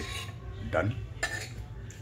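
Dishes and cutlery clinking, with two sharp clinks, one a little past a second in and one near the end.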